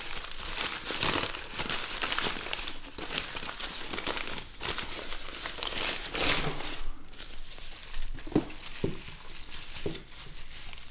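Brown kraft packing paper crumpling and rustling as it is pulled out of a cardboard box, then a plastic bag crinkling as a bagged part is handled. Two short knocks come near the end.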